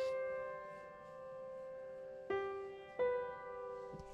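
Background music: a slow keyboard piece, with chords struck at the start, about two and a quarter seconds in and at three seconds, each ringing and fading away.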